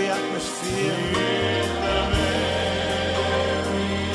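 Christian choral worship song: voices singing together over instrumental backing, with low bass notes coming in after about a second.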